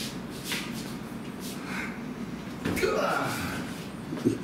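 Men's voices in a room, an indistinct exclamation or laugh about three seconds in, with brief rustles of clothing as arms move and hands meet.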